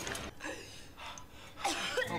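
A woman gasping for breath, two sharp intakes about a second apart, as she is revived.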